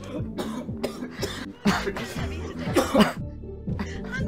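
A man coughing hard in several harsh bursts, bent over a sink, over background music with repeating falling low notes.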